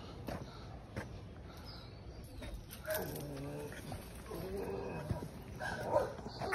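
A dog giving two short pitched calls, about three and four and a half seconds in.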